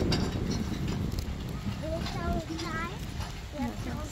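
Metal two-wheeled hand trolley rattling and clattering as it is pushed over rough, dry ground. A child's high voice calls out briefly in the middle.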